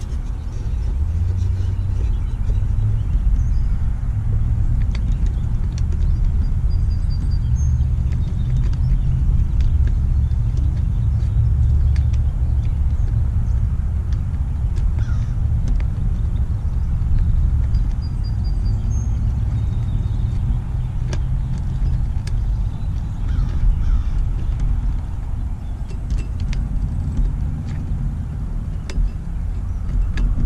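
Steady low rumble outdoors, with a few faint high bird chirps and scattered light clicks of hands handling the metal lamp head.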